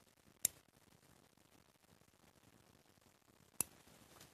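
Two sharp metallic clicks about three seconds apart from a stainless steel hemostat clamp being worked in the hand, its ratchet catching or its jaws snapping. Otherwise only faint outdoor background.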